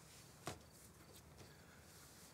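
Near silence: faint room tone with one short, faint click about half a second in.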